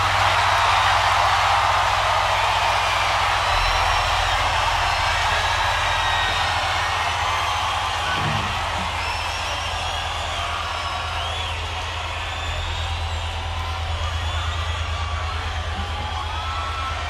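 Large crowd cheering, whooping and whistling just after a live rock song ends, slowly dying down over the stretch, with a steady low hum underneath.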